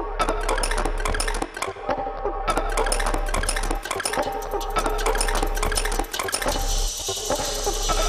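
Dense, fast metallic clattering and clinking with ringing tones, played as a percussive soundtrack; a hissing layer joins near the end.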